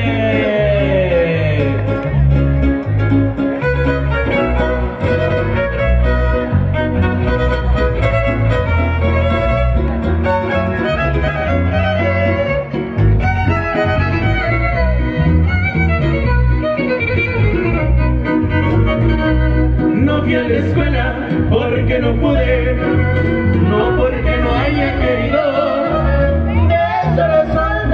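Live band playing a dance tune: violin lead over guitars and a strong, steady bass beat.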